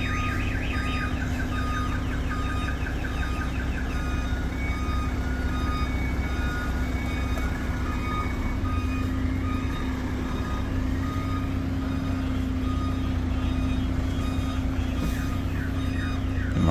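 Semi-truck's diesel engine running at low revs, heard from inside the cab as the rig is slowly manoeuvred into a parking bay. A short high electronic beep repeats at an even pace over it, like a reversing warning.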